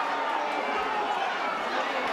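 Steady crowd noise from an audience in a hall: a continuous din of voices, shouting and chatter.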